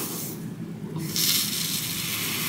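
Breath blown through a cotton pad soaked in micellar water, a hissing, frothy rush of air as the pad foams up. A short puff comes first, then a longer, louder blow starts about a second in.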